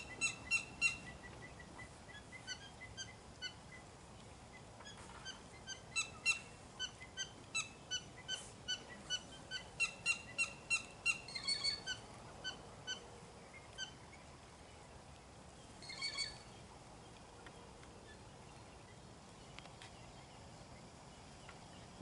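Repeated short, high chirps in irregular bouts, several a second at their busiest, from a calling animal. A brief rougher call comes about sixteen seconds in, and then the chirping stops.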